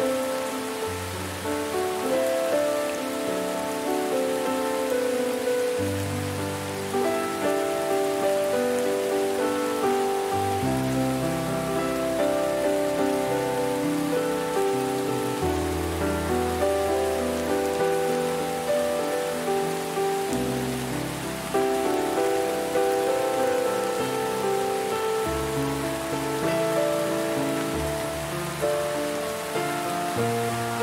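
Steady rain mixed with slow, calm music: held notes over a low bass note that changes every few seconds.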